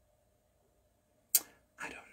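Near silence, broken about a second and a half in by a single sharp click that dies away quickly, just before a woman begins to speak.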